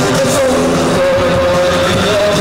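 Live gothic dark-wave band playing loudly, with held notes stepping from pitch to pitch over keyboards, guitar, bass and drums.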